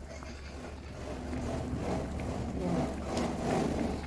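Wooden spoon stirring a pan of leafy vegetable soup as the broth simmers, with faint scraping and bubbling over a steady low hum. A faint voice is in the background partway through.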